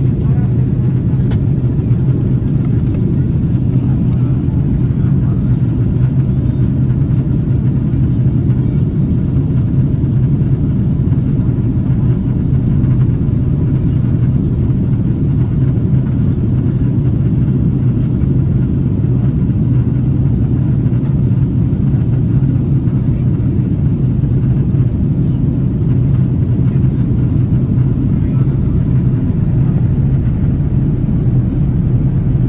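Steady cabin drone of an Airbus A330 airliner in flight, heard from a window seat: engine noise and rushing air, even and unchanging, with a strong low hum.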